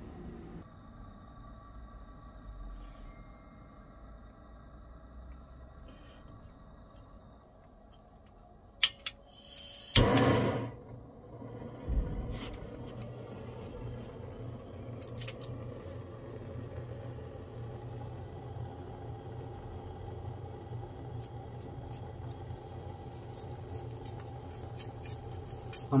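Small gas burner being lit under a stainless steel pot of potash and sulfur: a few sharp clicks, a brief loud whoosh about ten seconds in, then the flame running steadily with a low rushing sound. Now and then a metal rod taps and stirs in the pot as the mixture heats.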